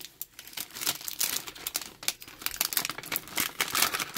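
Plastic wrapper crinkling and crackling as it is handled and pulled off a toy container: a fast, irregular run of sharp crackles.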